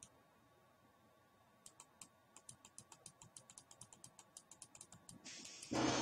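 A quick run of faint, light computer clicks, about seven a second, as a mouse scrolls through a command-prompt listing, followed near the end by a short hiss.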